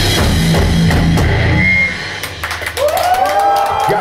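Live heavy rock band with drum kit and electric guitars playing loudly, then dropping off about two seconds in as the song ends. After that come scattered sharp hits and a long held pitched tone that slides up, holds, and falls away near the end.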